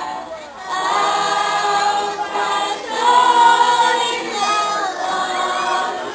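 A community choir of children and adults sings together. The voices hold long notes in phrases, with short breaks about half a second in and again near three seconds.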